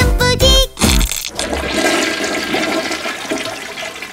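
The last notes of a children's song end about a second in, and a toilet-flush sound effect follows, fading out toward the end.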